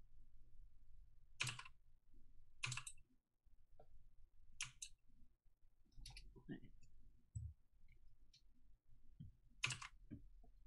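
Faint computer keyboard key clicks, about half a dozen, scattered irregularly with long gaps between them.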